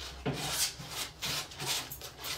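Metal palette knife scraping thick oil paint on a palette in a series of short strokes, about two or three a second.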